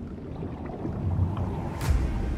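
Low, steady rumbling ambience heard underwater, with a short hiss near the end.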